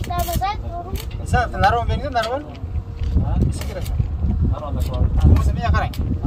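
Men talking, over a steady low rumble of wind on the microphone.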